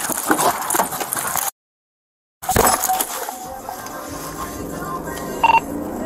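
Voices break off into a moment of dead silence, then the quiet inside of a police patrol car with a short electronic beep near the end.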